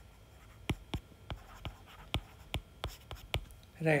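Stylus tip tapping and ticking on a tablet's glass screen while handwriting: about a dozen sharp, light clicks at uneven intervals.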